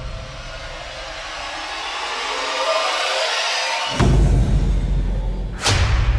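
Radio-station ident jingle (vinheta): a rising whoosh builds for about four seconds, then a deep bass hit lands, followed by another sharp hit near the end.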